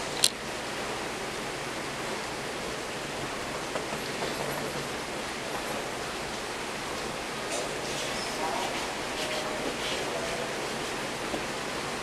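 Steady rain falling outside, heard as an even hiss, with one sharp click just after the start.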